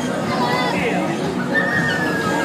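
Loud fairground ride din: a jumble of voices and high, drawn-out cries from riders, with one long cry starting near the end.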